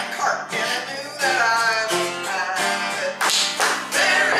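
Live folk song: acoustic guitar strummed while several voices sing together. The singing comes in fuller and more sustained about a second in.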